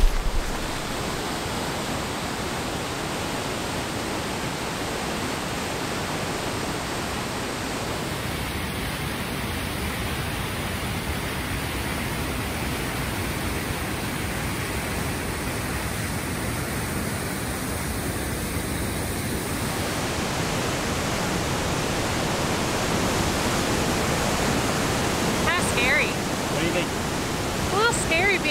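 Steady rush of white water as the Cleddau River pours through a narrow, boulder-choked rock gorge, growing slightly louder near the end.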